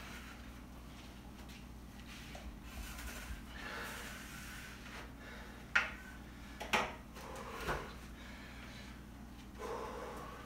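Wooden chairs and a broom handle being handled and set in place: soft shuffling and rubbing, then three sharp knocks about a second apart starting about six seconds in, as the stick is laid across the chair backs.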